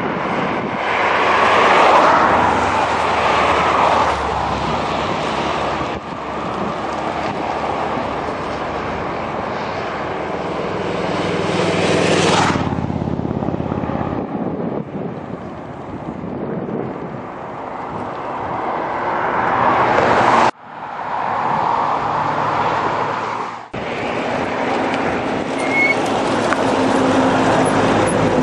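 Cars passing at speed one after another, among them classic open sports cars. Each engine swells as it approaches and falls away as it passes. The sound cuts off abruptly twice in the last third.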